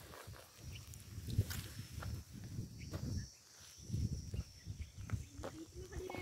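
Footsteps on dry, leaf-strewn ground, soft irregular thuds about once a second, with a faint steady high-pitched hum underneath.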